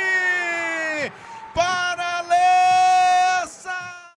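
A sports commentator's drawn-out shout on a held vowel: one long note of about a second, sagging slightly in pitch, then after a short break a second held note of about two seconds, and a brief third call near the end.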